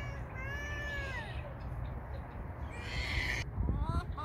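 Chickens calling: a long call that rises and falls in pitch in the first second, a harsh squawk about three seconds in, then short rising calls near the end.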